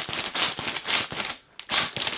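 Clear plastic bag crinkling and crackling as it is handled and turned over, with a brief lull about one and a half seconds in.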